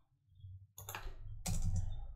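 Computer keyboard keys being pressed: two keystrokes, the first a little under a second in and a louder one at about a second and a half.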